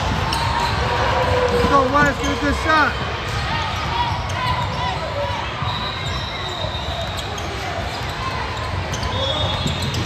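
Basketball being dribbled on a hardwood court in a large echoing hall, with a few short sneaker squeaks about two to three seconds in, over players and spectators talking and calling out.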